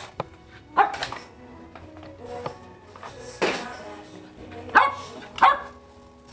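A dog barking a few short, sharp times over music playing in the background.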